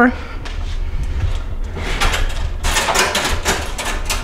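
Rustling and shuffling household noises in several short bursts, the busiest in the second half, over a steady low hum.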